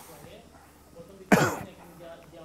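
A single short, loud cough about a second and a half in, over faint background talk.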